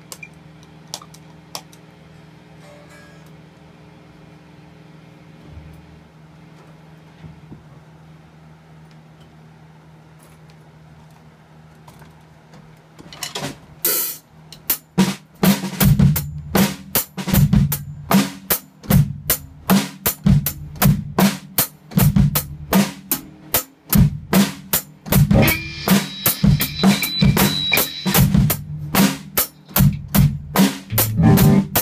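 A steady low hum with a few faint clicks, then about 13 seconds in a drum kit starts and plays a steady, repeating beat on kick drum, snare and cymbals, loud from about 15 seconds on.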